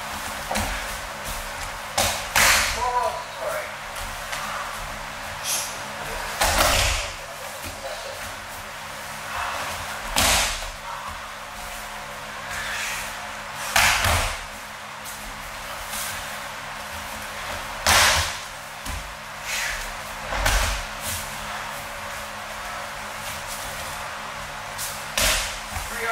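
Aikido partners being thrown and taking break falls on a padded dojo mat: a series of sharp slaps and thuds of bodies and arms landing, one about every three to four seconds.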